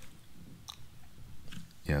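Faint mouth clicks and smacks in a pause between words, followed near the end by a spoken "yeah".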